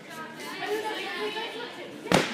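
Indistinct chatter of several people's voices in a large, echoing gym hall.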